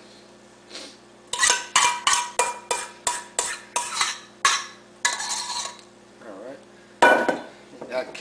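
A metal spoon scraping the last chocolate pudding out of a stainless steel mixing bowl: a quick run of scrapes and taps, about three a second, with a faint metallic ring from the bowl. One louder clank comes near the end.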